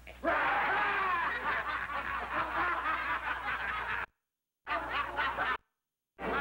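A crowd of people laughing loudly together, many voices overlapping. The laughter breaks off abruptly about four seconds in, comes back briefly, and cuts off again near the end.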